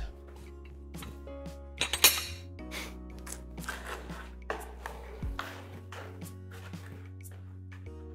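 Soft background music with held low bass notes, over scattered clinks and knocks of plates and cutlery being handled on a table; the sharpest clink comes about two seconds in.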